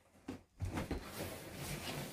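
Scissors cutting through the packing tape on a cardboard box, a steady scratchy sound that starts about half a second in.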